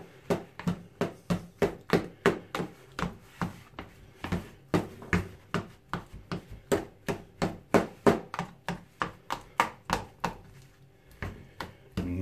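A knife chopping peeled hard-boiled eggs in a plastic bowl: repeated sharp knocks of the blade against the bowl, about three a second, with a brief lull near the end.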